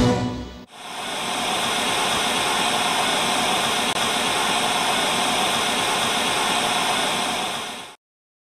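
Steady static-like hiss, the tail end of a music cue giving way to it less than a second in. The hiss fades in quickly, holds level, and cuts off abruptly at the end.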